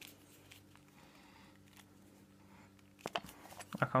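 Faint room hum for about three seconds, then a quick run of sharp plastic clicks and knocks as a plastic tube of silver coins is handled and its tight lid pried at without coming off.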